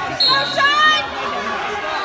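A spectator's loud shout of encouragement, about a second long and starting just after the beginning, over a steady murmur of crowd chatter in a large gym.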